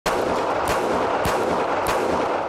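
Semi-automatic handgun firing four shots at a steady pace, about one every 0.6 s, each shot ringing out in the enclosed indoor range.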